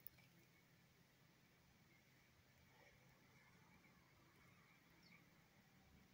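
Near silence: faint outdoor stillness, with a soft click at the very start and a few faint high chirps.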